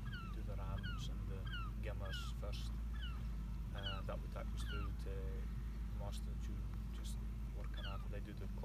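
Small birds calling over and over, short high chirps that each slide downward, several a second, over a man's voice and a steady low rumble.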